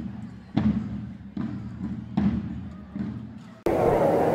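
Slow, regular beat of low thuds, each ringing out briefly, about one every 0.8 seconds, from an added backing track. It cuts off suddenly near the end and gives way to the babble of a crowd in a busy square.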